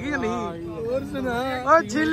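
A man's voice talking, over a steady low background hum.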